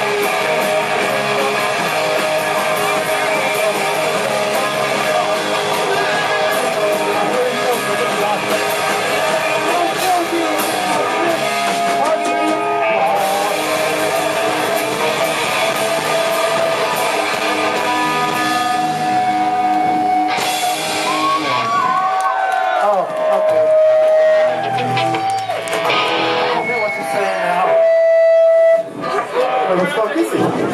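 Live rock band playing, with electric guitar prominent. About two-thirds of the way through, the full band thins to long held, bending guitar notes that swell loudly, then cut off suddenly near the end, as at the close of a song.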